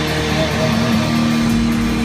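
Live rock band playing: electric guitar and drum kit, with a guitar note held from about a third of the way in to the end.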